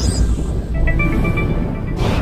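Logo intro sting: a rising swoosh right at the start over a deep, steady bass rumble, with a few short high tones in the middle and another swoosh near the end.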